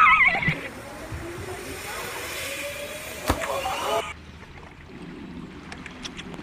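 A loud splash of water with a high shriek cutting off at the start, then a few seconds of steady rushing spray with a faint, slowly rising tone under it. It is followed by a sudden cut to a quieter, duller rush about four seconds in.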